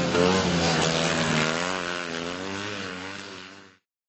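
Citroën 2CV autocross car's air-cooled flat-twin engine running, its pitch wavering up and down as it fades away, then cutting off just before the end.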